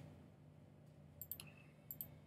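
Faint computer mouse clicks: a quick pair a little past a second in and another near the end, over a low steady hum.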